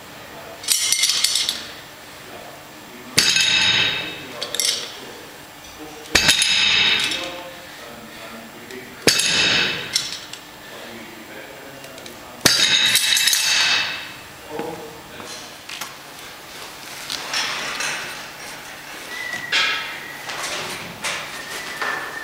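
Weight plates and loading pin under a Rolling Thunder revolving grip handle clanking sharply as the loaded pin is lifted and set back down, five times about every three seconds. Lighter metallic clinks follow near the end.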